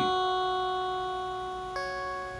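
A guitar chord ringing out and slowly fading, with a new chord struck near the end.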